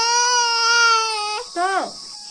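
Baby crying: one long held wail lasting about a second and a half, then a shorter cry that falls in pitch.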